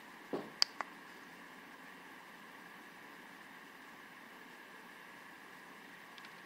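Two light clicks less than a second in, then faint steady room hiss while the UV-C lamp's timer counts down before the bulb comes on.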